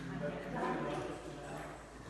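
Indistinct talking voices, with no clear words.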